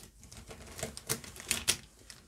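Plastic Posca paint pens clacking against each other as they are rummaged out of a fabric pencil case: a string of sharp clicks, bunched about a second in and again toward the end.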